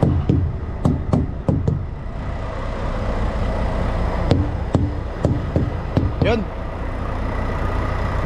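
Tire hammer striking the rubber of a semi tractor's dual drive tires, in two quick runs of dull knocks: about six in the first two seconds, then about five more between four and six seconds in. This is a thump check that the tires hold air and match each other.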